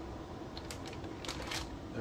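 Short handling clicks and rustles, several in quick succession in the second half, as a Pardus SD semi-auto shotgun is lifted and turned over its cardboard box and plastic bag.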